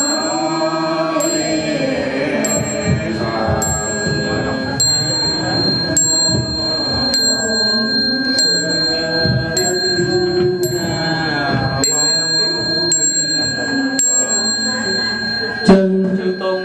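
Buddhist devotional chanting with instrumental music, with a small high-pitched bell struck about once a second throughout.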